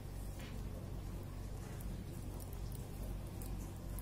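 Faint, scattered clicks and scrapes of metal knitting needles and yarn as stitches are purled, over a steady low hum.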